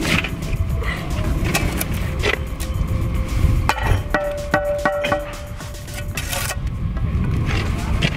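Steel mason's trowel scraping mortar and knocking against stone in short, sharp strokes as a mortared veneer stone is set and pressed into the wall, with music underneath.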